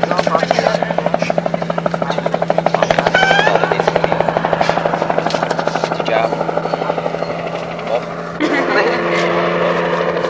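Helicopter rotor beating at about five pulses a second and fading away about six seconds in, with people's voices and a steady low hum underneath.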